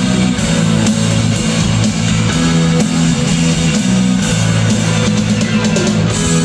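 Live rock band playing loudly, with a driving drum kit and electric guitars over sustained bass notes, heard from the stands of an arena.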